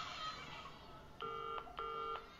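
A telephone ringing with a double-ring cadence: two short electronic tones in quick succession, starting about a second in.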